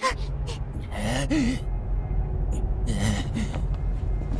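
Voice of a wounded animated character gasping and groaning twice, about a second in and again near three seconds, over a steady low rumble.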